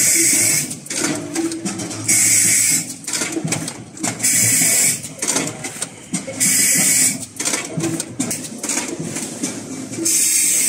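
Fruit and vegetable counting and netting machine running through its bagging cycle: a loud hiss of compressed air four times, about two seconds apart and each under a second long, over steady mechanical clatter.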